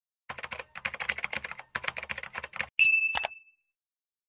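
A quick run of typing clicks, keys pressed in rapid bursts for about two and a half seconds, then a single bright bell ding near the end that rings out and fades within a second.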